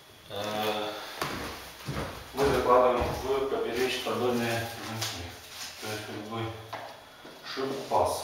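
A man talking indistinctly while working, with a scrape and knock of a laminate plank being handled about two seconds in.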